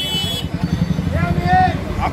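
City bus engine idling close by, a steady pulsing low rumble. A high steady tone cuts off about half a second in, and a voice speaks briefly near the middle.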